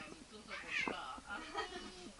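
Several short, pitched vocal calls that bend up and down in pitch, the strongest about half a second in and another about a second and a half in.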